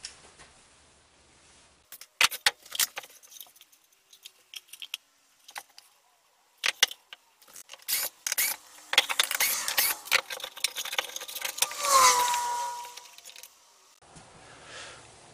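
An 18-gauge pneumatic brad nailer firing a quick run of sharp shots into a plywood box, then a cordless drill boring or driving into the wood. Near the end the drill's motor whine slides down in pitch as it winds down.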